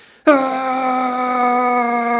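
A man's voice holding one long, steady 'aaah' that starts about a quarter second in and sinks slowly in pitch. It imitates the engine revving while a slipping clutch spins before it grabs.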